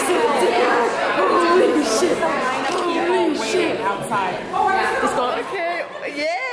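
Crowd chatter: many people talking over one another in a busy room.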